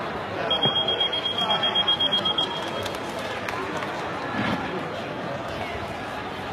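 High-pitched electronic beeping from a bout timer, one steady tone pulsed rapidly for about two seconds, signalling the end of the round. Hall chatter runs on underneath.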